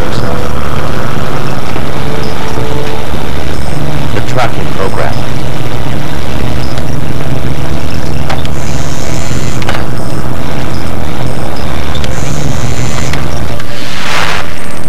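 A steady low machine-like drone fills the film soundtrack, with a few short clicks and thin, high electronic tones over it.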